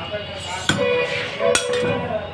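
Two sharp clinks of glass, about a second apart, as a frosted glass sheet is worked with a hand glass cutter.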